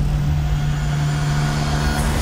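Sci-fi film sound design: a loud, steady low drone holding one pitch over a deep rumble.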